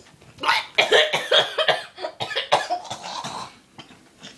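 A woman coughing hard in a rapid string of coughs, starting about half a second in and lasting about three seconds.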